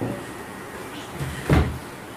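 Two dull knocks, a light one at the start and a louder one about one and a half seconds in, over a low steady room hum.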